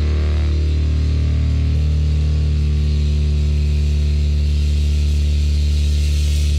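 Heavy, distorted electric guitar chord held and left to ring as a loud, steady low drone, with no drum hits. The upper notes shift slightly about two seconds in.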